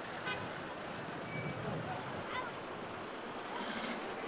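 Busy city street ambience: traffic noise and the chatter of passers-by, with a brief car horn toot near the start.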